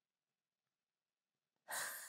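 Near silence, then near the end a woman's audible breath, taken just before she speaks.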